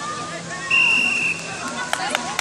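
A single short, high whistle blast about a second in, over players' voices calling across the field.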